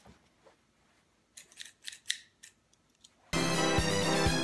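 A few quick, sharp scraping snips as a cardboard shipping box is cut open. Near the end, background music with a steady beat of about two thumps a second starts suddenly and is louder than anything before it.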